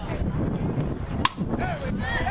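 Softball bat striking a pitched ball: one sharp crack just over a second in, followed by spectators starting to shout.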